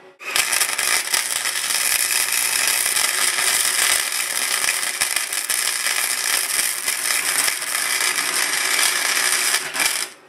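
Stick arc welding on the sheet-steel horn of a Thunderbolt 1003 siren, welding up a crack. The arc gives a steady, loud crackling hiss that strikes up just after the start and cuts off sharply at the very end.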